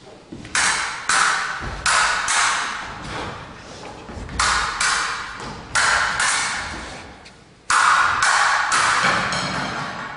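Fencing swords clashing, about a dozen sharp ringing strikes in quick pairs and threes, each ringing out for about half a second. Low thuds of footwork on a wooden floor come between them.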